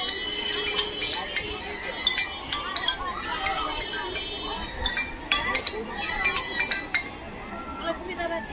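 Irregular metallic clinking and chiming, many quick strikes that each ring briefly, over a murmur of voices.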